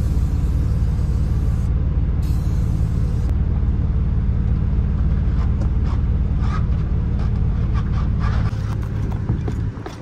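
Two hissing bursts of Gorilla spray adhesive from an aerosol can, the first about a second and a half long and the second about a second. Under them runs the steady low hum of an idling vehicle engine, which drops away near the end. A few light knocks follow as the glued part is pressed into place.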